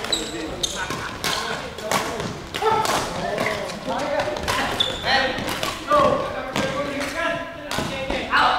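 Badminton rackets striking a shuttlecock in a quick rally, a series of sharp hits about every half second to a second, in a large sports hall. Indistinct voices chatter underneath.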